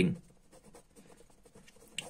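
Pen writing on paper: faint, scratchy strokes as a word is written by hand.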